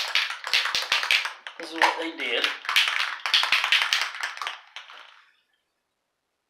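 Spray paint can being shaken, its mixing ball rattling in quick runs, stopping about five seconds in.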